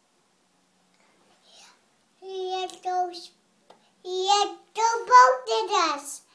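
A toddler's voice in several drawn-out phrases with held, level pitches and no clear words, starting about two seconds in after near silence.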